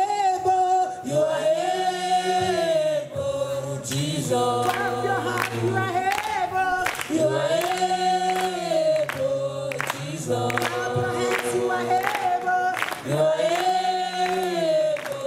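Gospel group singing live through microphones in Nigerian-style Christian worship song: a lead voice over several voices in harmony, holding long notes in phrases of two to three seconds each.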